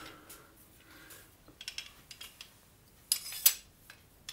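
Metal tools being handled on a workbench: a few faint clinks and taps, then a louder short metallic clatter about three seconds in as a steel sash clamp is picked up.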